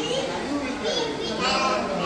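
Children's high voices calling out and chattering, with people talking.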